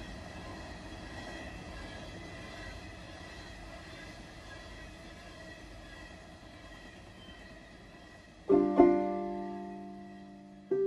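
Freight train rolling past, a steady rumble with a faint high tone that slowly softens. About eight and a half seconds in, a clawhammer banjo comes in loud with a chord, struck again just after, and rings down.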